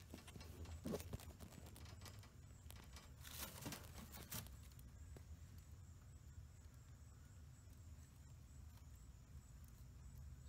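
A pet rabbit moving about in its wire cage on hay: a few faint rustles and light clicks in the first few seconds. After that, near silence with a faint steady hum.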